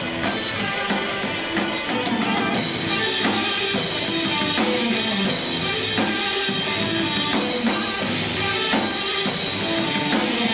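Live stoner/doom metal band playing: electric guitars through Marshall amplifiers over a full drum kit, a dense, steady wall of sound with regular drum hits.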